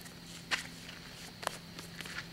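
Footsteps and scuffs on gravel as a person rises from all fours and walks, with two sharper steps about a second apart.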